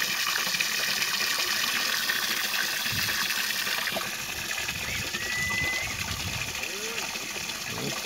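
Steady outdoor hiss with low, uneven rumbling in the middle as the camera is carried along, and a short high whistled note about five seconds in.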